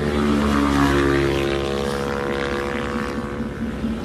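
Motorcycle engines running as bikes ride past on the road, one steady engine note that dips slightly in pitch about a second in and then eases off.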